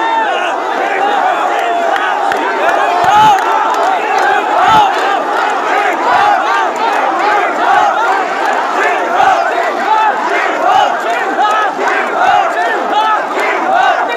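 A very large crowd of people shouting and cheering together, many voices overlapping in a loud, steady roar.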